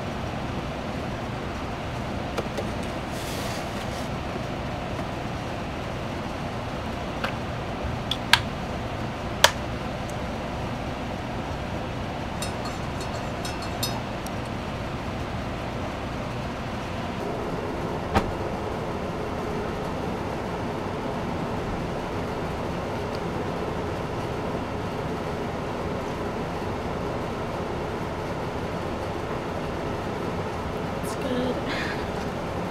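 A few sharp clinks and knocks of a metal spoon and a ceramic mug as tea is stirred and the mug is handled, over a steady low rumbling background.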